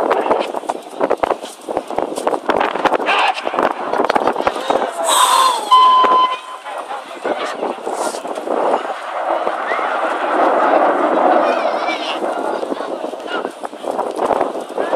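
Strong wind buffeting the microphone in gusts, with indistinct voices behind it.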